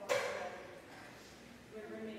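A woman's voice speaking into a microphone in a hall, starting with a short, loud burst that fades over about a second. After a brief pause her speech resumes near the end.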